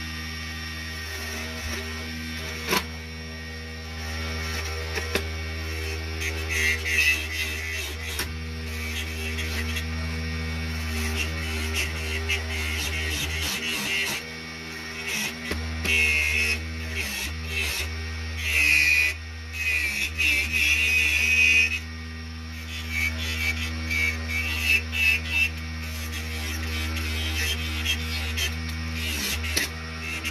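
Mini wood lathe running with a steady motor hum while a small chisel cuts the spinning wooden blank. The cutting comes in several louder bursts of scraping hiss, and the motor's pitch sags slightly as the tool bites.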